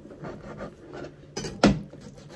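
Kitchen knife slicing through aburaage (deep-fried tofu) on a plastic cutting board: a run of soft cuts, then one sharper knock of the blade on the board late on.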